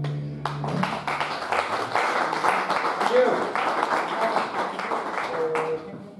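The last chord of acoustic guitar and upright bass dies away, then an audience applauds with a few voices calling out, the clapping fading near the end.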